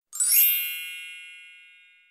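An edited-in chime sound effect: a quick rising shimmer, then a bright ding ringing on several high tones that fades away over about two seconds.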